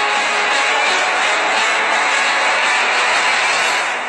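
A loud, steady rushing noise with almost no clear tones in it, as the guitar music before it gives way.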